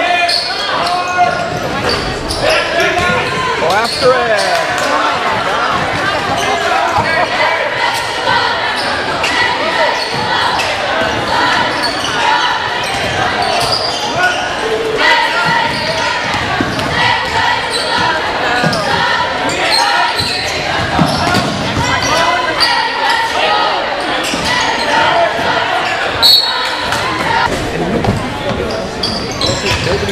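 Basketball game sounds in a large school gym: a ball bouncing on the hardwood court, with many short knocks, over constant voices and shouts from spectators and players.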